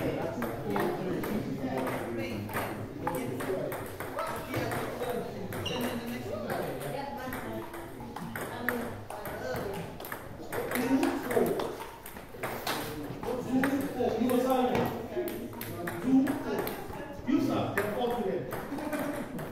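Table tennis balls clicking off bats and tables in quick, irregular succession from several rallies going on at once, over background chatter of voices.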